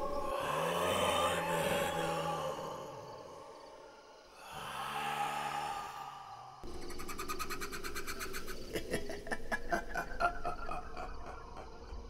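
Horror-film sound design: two swelling, breathy whooshes with a low growling drone under them, then a fast, even train of crackling clicks from about seven seconds in.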